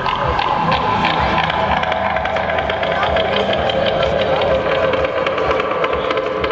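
A live rock band's amplified instruments holding sustained, slowly shifting tones through the festival PA, with crowd chatter close to the microphone.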